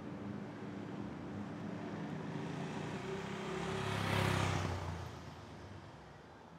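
A car passing by: engine rumble and tyre noise swell to a peak about four seconds in, then fade away.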